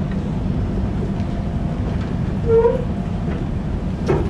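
Steady low rumbling hum of room background noise, with a brief pitched sound about two and a half seconds in.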